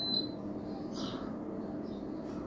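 A split air conditioner gives one short high beep as it takes a remote-control command to lower the set temperature, over a steady low hum. The unit is still running on its fan only, with the compressor not yet started.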